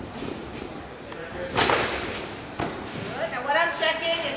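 A gymnast landing a trampoline somersault: a loud thud about a second and a half in, then a softer thud about a second later. A voice starts near the end.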